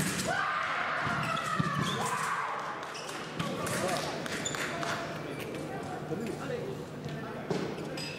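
Large indoor fencing hall ambience: distant voices with scattered thumps and knocks over a steady hum.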